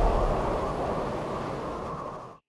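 Low rumbling noise from a produced sound effect, fading out steadily as it dies away.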